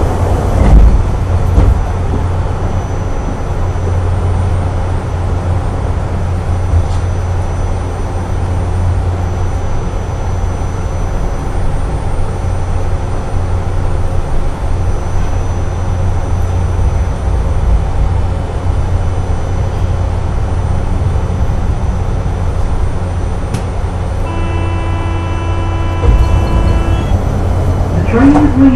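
Steady low hum inside a stationary automated airport people-mover car, the O'Hare tram. Near the end a held electronic tone sounds for about three seconds.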